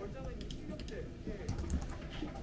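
Typing on a computer keyboard: irregular, quick clicks of the keys, with faint voices in the background.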